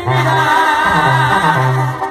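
Live banda sinaloense music: a brass band with a tuba bass line stepping between held notes under loud singing.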